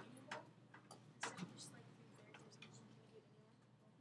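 Near silence: room tone with a low hum and a few faint clicks in the first second and a half.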